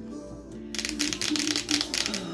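Rapid clicking of long fingernails tapping on a wooden tabletop, starting under a second in, over background music.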